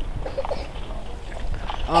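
Low, steady wind rumble on the microphone of a handheld camera held outdoors, with a few faint short sounds about half a second in. A man's voice starts near the end.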